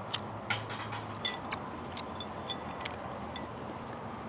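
Outdoor patio ambience: a steady low background noise with scattered light clicks and ticks, a few of them ringing briefly.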